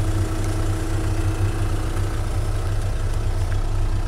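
Renault Mégane 1.5 dCi four-cylinder turbodiesel engine idling, a steady, even hum heard from inside the car's cabin.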